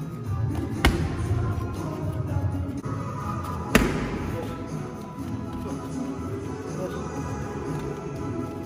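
Two sharp smacks of strikes landing on a trainer's belly pad, about three seconds apart, the second a kick and the louder, over background music.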